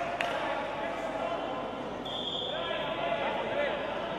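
Voices in a sports hall, with two sharp knocks right at the start and a short, steady, high whistle blast about two seconds in: the referee's whistle restarting the wrestling bout.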